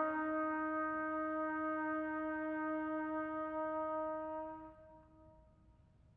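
A trumpet holding one long, steady note that fades away about four and a half seconds in, leaving near silence.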